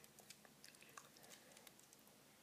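Near silence with a few faint, scattered clicks of small plastic Lego pieces being handled as a minifigure is set into a small vehicle.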